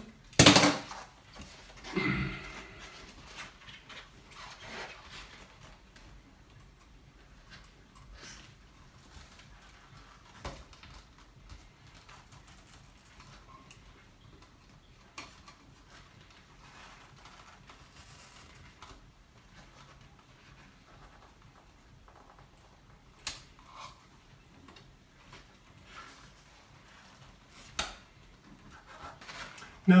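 Scattered small clicks and taps from pliers and the copper ground wire being handled and worked onto an electrical outlet's terminal, with long quiet stretches between them; the sharpest click comes right at the start.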